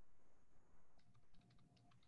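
Near silence, then a quick run of faint clicks from a computer keyboard being typed on in the second half.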